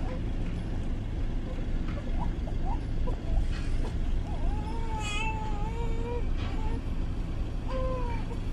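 Steady low rumble of wind and vehicle noise, with a high, wavering pitched call over it: short calls in the first half and one held for about two seconds past the middle.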